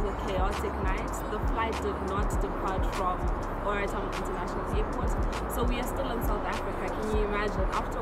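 A woman talking, with background music playing under her voice.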